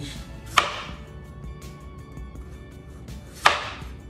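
Chef's knife slicing through peeled butternut squash and hitting a plastic cutting board: two sharp knocks about three seconds apart, with small ticks between.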